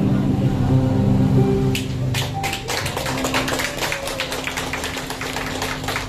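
Instrumental backing music holding the closing chords of a song, then a congregation applauding from about two seconds in, the clapping going on over the fading music.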